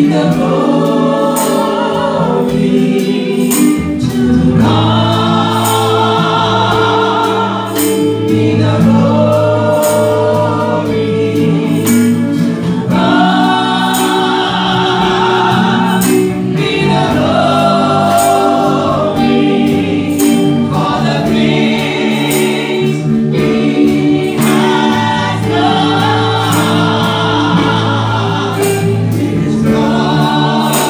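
Women's voices singing a gospel praise song through microphones in long, held notes, over instrumental accompaniment with a steady bass and beat.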